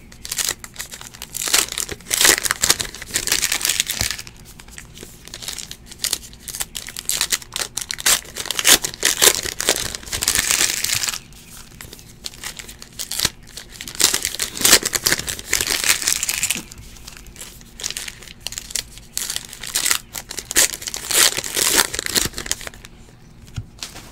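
Panini Classics football card pack wrappers being torn open and crinkled by hand, in four bursts of crackling a few seconds apart with quieter pauses between.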